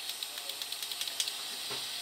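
Toyota 22RE fuel injector being pulsed on a test adapter: faint, irregular clicks over a steady hiss. The injector only clicks slightly and dribbles instead of spraying a pattern, the sign of a defective injector.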